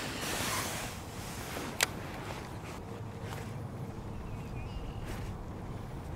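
Steady low wind rumble on the microphone, with one sharp click about two seconds in and a few faint ticks later.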